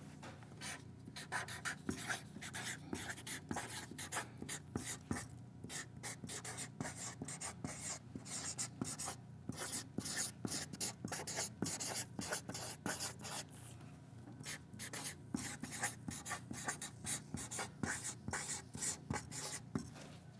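Marker writing on chart paper: a quick run of short strokes, with a brief lull about fourteen seconds in.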